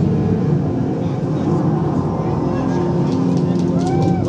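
Loud, dense rumbling sound effects from a projection-mapping show's soundtrack, with faint swooping pitch glides that build toward the end, and voices mixed in.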